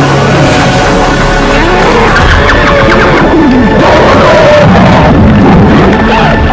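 Loud dramatic film score of sliding, wailing tones over water churning and splashing in a violent struggle.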